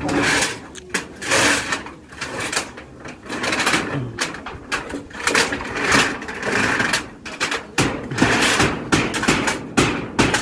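A corrugated fibre-cement roofing sheet scraping and rubbing over wooden rafters as it is pushed up into place. The sound comes in repeated rough bursts with a few sharp knocks.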